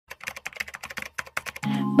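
Rapid, irregular clicking of a computer-keyboard typing sound effect. Music with low steady tones comes in near the end.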